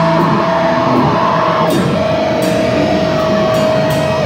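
Hardcore band playing live and loud: electric guitars and drum kit with repeated cymbal hits. A single guitar note is held steady through the second half.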